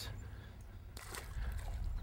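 Faint sloshing of river water as a small bass is lowered over the side of a boat and released, over a low steady rumble.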